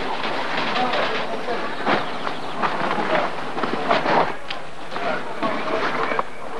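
Nylon tent fabric rustling and scraping in irregular bursts as a dome tent is handled, with voices in the background.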